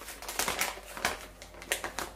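Clear plastic packaging crinkling in quick, irregular crackles as hands handle it and open it.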